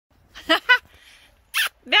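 Boerboel puppies yipping, two short high yips close together about half a second in.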